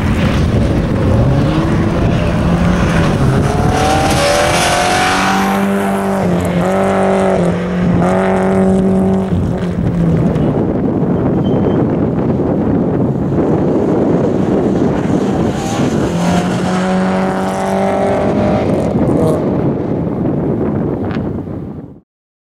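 Rally car engine driven hard through a course, the revs rising, holding and dropping several times as it changes gear and brakes for bends, over steady tyre and road noise. The sound cuts off suddenly at the end.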